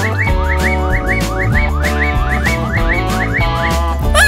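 Cartoon background music with a run of short rising whistle-like sound effects, about three a second, each marking a sausage slice popping onto the pizza.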